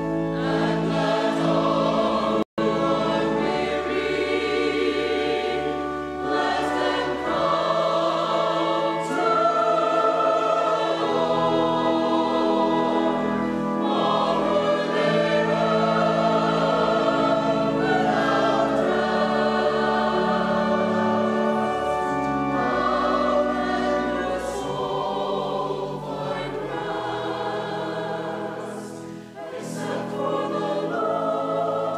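Church choir singing an anthem in parts, with a very brief dropout in the sound about two and a half seconds in.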